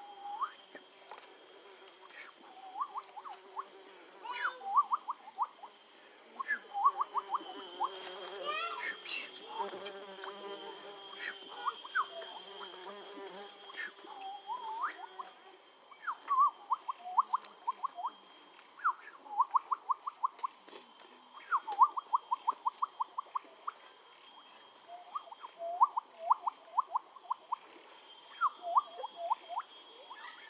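Rainforest wildlife: a steady high-pitched insect buzz, with a calling animal repeating runs of quick rising chirps, five to ten in a run, a run every couple of seconds, more often in the second half.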